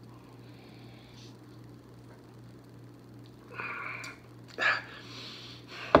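A man drinking a sip of beer quietly, then two short breaths through the nose as he tastes it, the second louder, about three and a half and four and a half seconds in, over a faint steady low hum.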